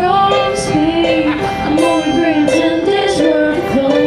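A live band playing a song: a voice sings a melody over acoustic guitar and electric keyboard.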